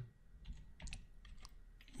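Faint computer keyboard typing: a handful of uneven keystrokes as a short name is typed in.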